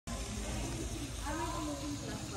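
Faint voices talking in the background over a steady low hum and hiss.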